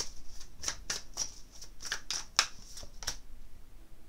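A deck of tarot cards being shuffled by hand: a run of crisp card flicks and snaps, stopping about three seconds in.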